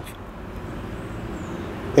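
Low, steady outdoor background rumble with no distinct events, of the kind left by distant road traffic.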